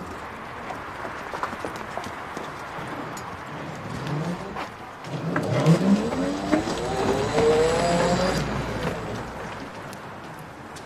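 Electric scooter pulling away, its motor rising in pitch as it speeds up: a short rise about four seconds in, then a longer, louder rise that fades near the end.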